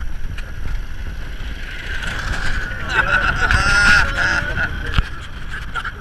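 Low, steady rumble of a car engine and wind at an open window, with a voice calling out briefly about three seconds in.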